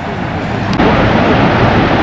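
Steady rushing noise of the American Falls at Niagara, water pouring onto the rocks below.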